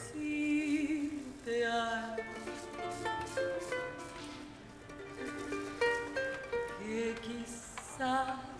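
A ukulele band playing a bolero: a woman singing with vibrato over plucked ukulele accompaniment.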